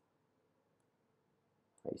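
A few faint, sparse computer mouse clicks over quiet room tone, followed near the end by a spoken word.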